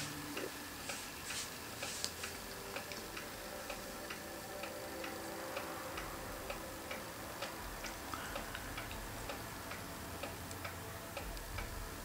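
Quiet, regular ticking, about two to three ticks a second, over a faint steady hum.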